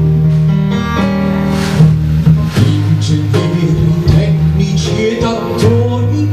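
Live band music: keyboard and plucked-string accompaniment over a bass line that moves in steps, with a wavering voice line coming in near the end.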